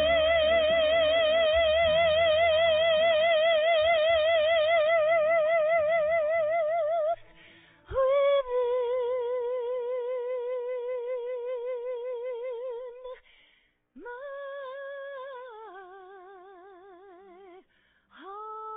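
A woman singing solo into a microphone, holding long notes with a wide vibrato. Low accompaniment under the first note stops about seven seconds in, and she carries on alone with two more long notes, the last stepping down in pitch.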